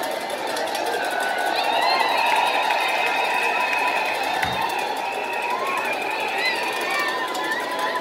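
A church congregation cheering, a dense crowd of voices with many high, wavering ululating cries on top.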